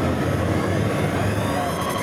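Steady low rumble of a distant engine, with a faint high whine near the end.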